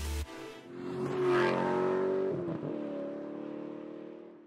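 A motor vehicle engine revs up about a second in, then holds a steady pitch while fading away toward the end. Background music stops just before it.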